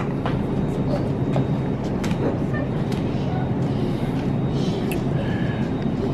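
Shopping cart rolling on a store floor, a steady rumble with scattered small clicks and rattles, with faint voices in the background.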